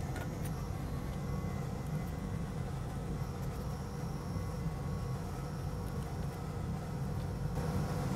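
Steady low hum with a faint even hiss over it, with no distinct strokes or knocks.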